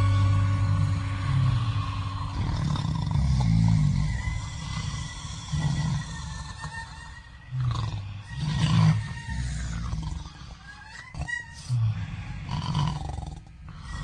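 A quiet, sparse passage in a live avant-rock performance: low growling swells rise and fade every second or two, with scattered higher noises between them.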